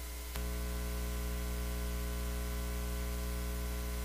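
Electrical hum with a stack of steady tones over static hiss on an open audio line, with no one speaking. A click about a third of a second in, after which the hum gets louder.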